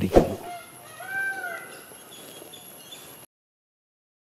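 A sharp knock just after the last spoken words, then a faint call that rises and falls about a second in. The sound cuts off abruptly a little past three seconds.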